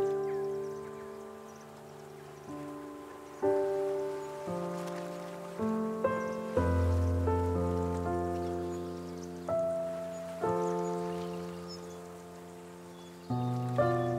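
Slow, calm solo piano: chords and single notes struck about once every one to three seconds, each left to ring and fade before the next.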